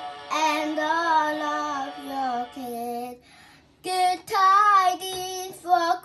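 A young girl singing into a toy karaoke microphone, holding and bending her notes, with a brief break a little past halfway before she sings on.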